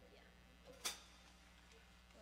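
Near silence with a low steady hum, faint distant voices, and one sharp click just under a second in.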